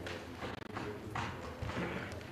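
Press camera shutters clicking irregularly, about four times, over a steady low hum.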